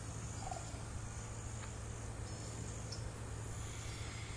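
Steady high-pitched chirring of insects such as crickets, over a low steady hum, with one short faint call about half a second in.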